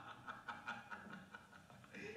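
A man laughing in a run of quick, rhythmic ha-ha pulses, about five a second, fading out after about a second and a half, heard from a film soundtrack played over theatre speakers.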